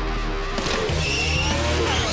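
Car sounds of a race, with revving whines sliding up and down in pitch and tyre squeal, over background music.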